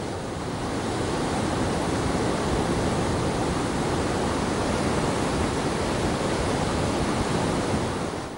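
The Kaveri river in heavy flood: a steady, loud rush of fast-flowing water, swollen by a huge discharge released from the KRS dam.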